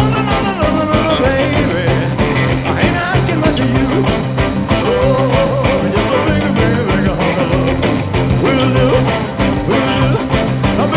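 A rock and roll band recording plays at full tilt over a fast, steady drum beat, with a Telecaster-style electric guitar strummed along to it.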